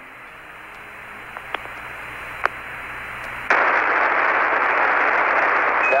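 Apollo air-to-ground radio static between transmissions, on a weak link while the crew hunt for an antenna that holds lock. The hiss slowly swells, with a few faint clicks, then jumps louder about three and a half seconds in. It ends with a brief high beep, the Quindar tone that opens Houston's next call.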